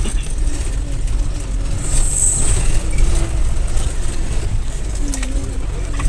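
Steady engine and road rumble heard inside a moving van's cabin, with faint voices in the background and a brief high hiss about two seconds in.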